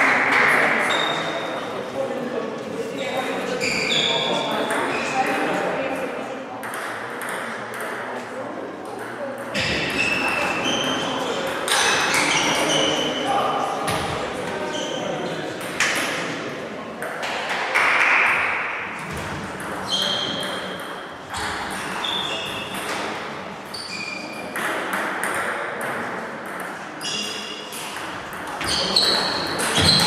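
Table tennis balls striking bats and tables in several games at once in a large hall: a steady, irregular stream of short, high pings.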